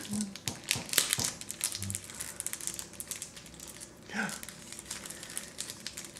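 Crinkling handling noise with many small sharp clicks and scratches, thickest in the first few seconds, from a scratch-off lottery ticket being handled. Brief low voice sounds come in between.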